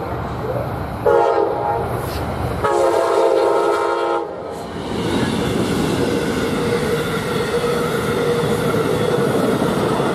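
Nathan Airchime K5LA five-chime horn on an Amtrak P42DC locomotive sounding a short blast and then a longer one, about a second apart. From about five seconds in, the locomotive and passenger cars go past at speed with a steady rush of wheels on rail.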